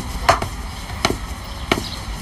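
Footsteps on a wooden staircase and floor: hard-soled shoes knocking at an even walking pace, about one step every two-thirds of a second.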